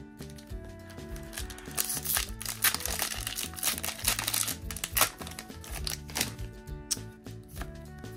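Foil wrapper of a Pokémon booster pack crinkling on and off as it is torn open, most of it in the first half, over steady background music.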